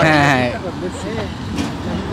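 A man laughing for about half a second, then a lower background of street noise with faint traffic.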